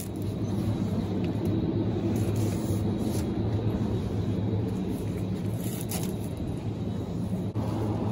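Supermarket aisle background: a steady low hum and rumble, without clear knocks or clatter.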